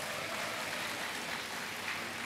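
Large audience applauding steadily in a hall, a dense even patter of many hands.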